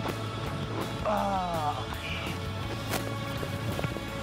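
Background music throughout, with a brief voice about a second in. Near three seconds in there is a single sharp thud: a rugby ball being kicked.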